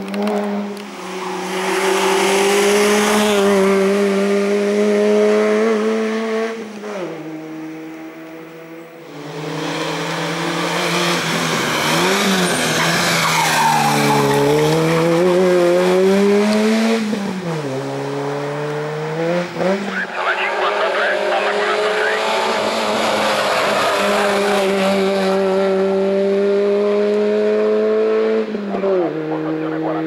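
Peugeot 106 hill-climb car's four-cylinder engine pulling hard at high revs, its pitch holding steady for long stretches. The pitch drops sharply twice, once about a quarter of the way in and once near the end, and in the middle section it rises and falls several times in quick succession as the car brakes, downshifts and accelerates through tight corners.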